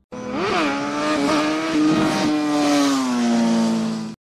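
Logo sound effect: one pitched, engine-like tone that swoops up and back down about half a second in, then holds and slowly sinks in pitch with a hiss over it, cutting off suddenly at the end.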